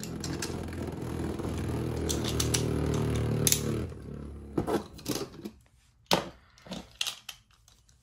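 A Beyblade spinning on the plastic floor of a Beyblade Burst stadium, a steady whirring hum that fades out about four seconds in as the top slows. A few sharp plastic clicks follow.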